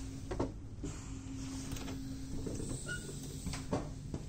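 Automatic sliding door between the cars of a Finnish Intercity double-decker train opening after its push button is pressed: a few clicks and the mechanism running, over the train's steady low hum and rumble.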